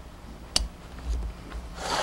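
Workshop handling noise from a motorcycle cylinder head being moved on a workbench: a single sharp click about half a second in, then a short rubbing, rushing noise near the end.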